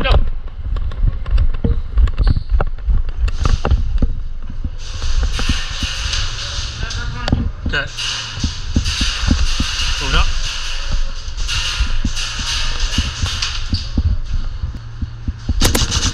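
Running footsteps and gear knocking against a rifle-mounted action camera, with sharp clicks and spells of airsoft gunfire; a quick cluster of sharp shots comes near the end.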